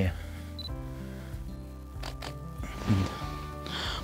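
Soft background music with long sustained notes, and a few sharp camera shutter clicks about two seconds in as a photo is taken.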